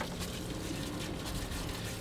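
Water running from a yacht's deck hose, a steady rush with a faint even hum under it.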